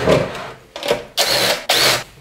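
Plastic airbox and its rubber breather hose being worked loose from a Honda GX200 engine: hands rubbing and tugging on the parts, with two short rasping scrapes in the second half.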